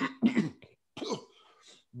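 A man clearing his throat hard in a phlegmy, hacking cough, acting out a throat full of phlegm. Two loud bursts come at the start, then a fainter rasp about a second in.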